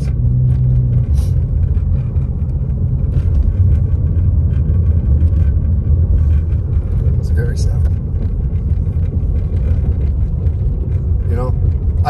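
Steady low rumble of a car's engine and tyres heard inside the cabin while driving along a snow-dusted road.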